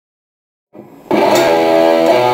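Ibanez electric guitar with distortion comes in about a second in, after a short silence and a faint buzz, and rings on in sustained notes.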